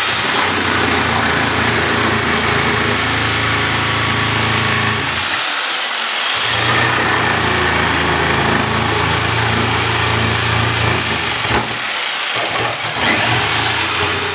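Electric jigsaw running and cutting V-notches into the end of a fir board, a steady motor whine with the blade rasping through the wood. The motor's pitch dips briefly twice, near the middle and again a couple of seconds before the end.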